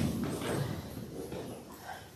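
A congregation moving after a prayer: a sharp knock at the start, then shuffling and rustling that fades.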